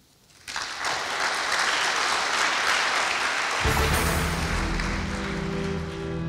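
Audience applause starting about half a second in, after the end of a lecture. About three and a half seconds in, outro music with a deep bass line comes in over the applause.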